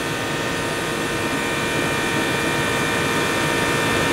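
An air conditioner's outdoor condensing unit runs steadily, its compressor and condenser fan giving an even rush with a steady hum, growing slowly louder while refrigerant gas is fed into the suction side of the undercharged system.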